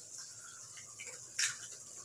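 Quiet handling of an egg being opened into a pan of tomato sauce, with one short crisp crackle about one and a half seconds in.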